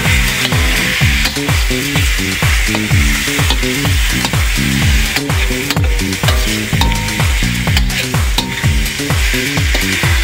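Chicken liver and carrots sizzling as they are stir-fried in a stainless steel wok with a metal spatula. Background music with a steady beat plays throughout.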